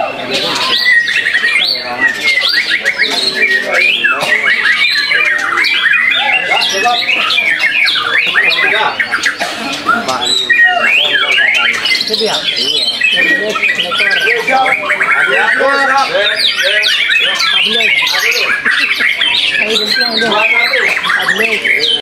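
White-rumped shama singing without a break: a fast, varied stream of whistled phrases, rapid trills and sliding notes.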